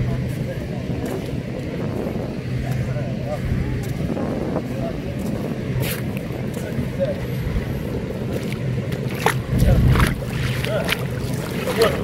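Wind buffeting the microphone on an open seashore, a continuous low rumble with faint voices in it. A stronger gust hits about nine seconds in.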